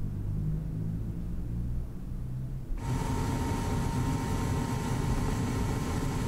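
A low drone, then about three seconds in the steady roar of a glassblowing furnace's gas burner cuts in suddenly, with a faint steady whine in it, as a blowpipe sits in the glowing furnace mouth.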